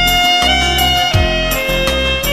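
Grassi AS 200 alto saxophone, with a metal mouthpiece and a plastic-coated reed, playing a slow melody of held notes that step down in pitch, over a backing track with bass and a soft beat about every second and a half.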